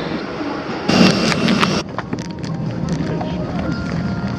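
Indistinct voices and bustle of passengers boarding. After about two seconds this gives way to the quieter hum of an aircraft cabin, with a faint steady whine and scattered small clicks.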